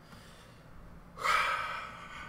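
A man's loud, breathy gasp about a second in, starting suddenly and fading away over about half a second.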